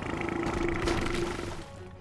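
Cartoon quake effect: a rumble and a stone statue cracking and crumbling to pieces, loud at first and dying away after about a second and a half, over background music with a held low note.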